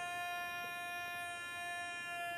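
A steady electronic tone with a stack of overtones, held level without rising or falling, from the hall's microphone and loudspeaker system: a PA ring or whine heard while the lecture pauses.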